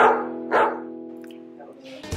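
A dog barking twice, about half a second apart, over a held music chord that fades away.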